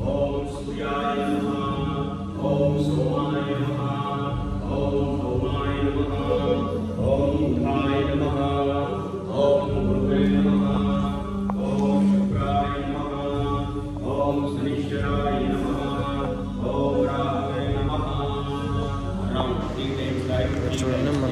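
Hindu devotional mantra chanting: a voice intoning phrase after phrase in a steady rhythm over a low steady tone.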